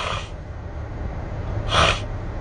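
Two short breaths from a man, one at the start and one near the end, over a low steady rumble inside a car's cabin.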